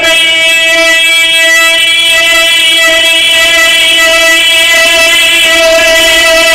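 A man's voice holding one long, steady sung note in a chanted Shia majlis recitation, the pitch unwavering with no break for breath.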